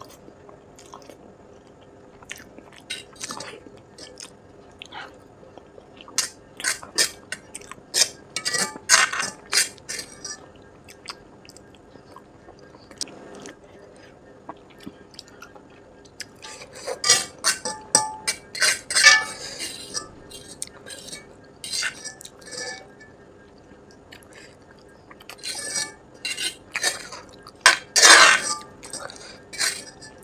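Close-miked eating sounds: a metal fork clinking and scraping against a black metal pan as the last noodles are gathered, with chewing of Maggi noodles between. The clicks and scrapes come in three spells, quieter in between.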